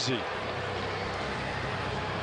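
Steady murmur of an arena crowd, with no cheering swell, just after the visiting team scores.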